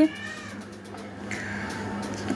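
A cat meowing, with one call at the start that falls slightly in pitch.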